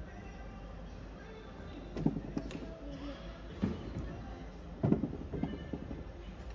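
Indoor arena ambience: faint background music and voices over a steady low hum. Three dull thuds come irregularly, about a second and a half apart.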